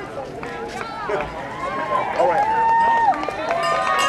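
Indistinct voices of several people talking and calling out in the background, some held and drawn out, with a few faint clicks among them.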